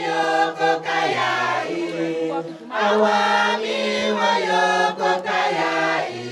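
A group of voices singing together in chorus, with long held notes, a short break about two and a half seconds in, and then the singing picks up again.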